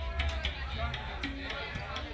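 Live funk-rock band playing on a small stage: drum kit with steady cymbal hits over a deep bass line, with guitar notes in the middle.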